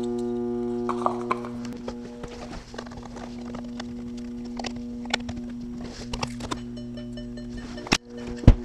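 Steady electrical hum from a running battery charger, louder in the first second or so and then lower. Scattered light clicks, knocks and shuffling footsteps over it from handling the scan-tool dongle and climbing in and out of the car.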